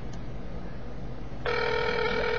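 Electronic telephone ring tone: a steady buzzing tone that starts about one and a half seconds in, over a low steady hum.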